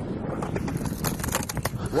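A hooked bass thrashing and splashing at the bow of a bass boat, a quick run of clicks and knocks over a steady wash of wind and water noise, busiest in the second half.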